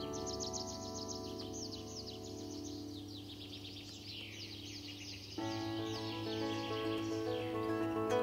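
Bandura strings ringing and slowly dying away, then a new run of plucked notes beginning about five seconds in. Birds sing throughout in quick series of high, downward-sliding chirps.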